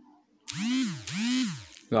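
A small motor whirring twice in quick succession, each burst rising then falling in pitch.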